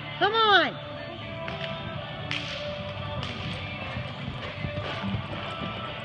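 A short whooping shout just after the start, rising and then falling in pitch, over steady background music, with a few scattered sharp knocks.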